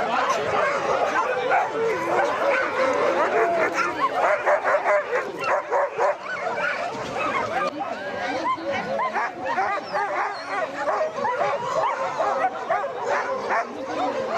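A chorus of many harnessed sled dogs barking, yipping and whining together, the calls overlapping without a break: the eager noise of a team waiting to start.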